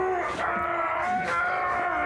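A man's voice groaning in pain: several long, drawn-out moans one after another, each held and bending slightly in pitch.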